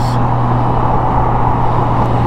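2016 Honda Goldwing's flat-six engine running at a steady highway cruise, a constant low hum under loud wind and road rush on the helmet-mounted microphone.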